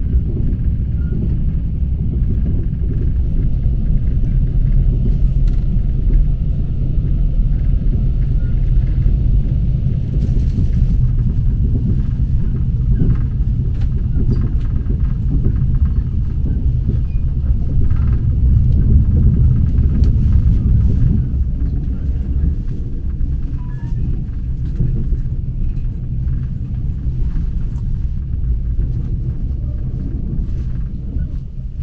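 Low, steady rumble of a Mugunghwa passenger train running along the track, heard from inside the carriage, with faint scattered clicks and rattles.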